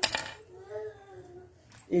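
A single sharp metallic click from gold earrings being handled, followed by a faint voice-like sound in the background.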